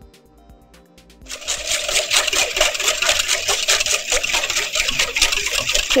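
Wire whisk beating a runny mixture in a stainless steel bowl: fast, dense metallic clicking that starts about a second in, with music faintly beneath.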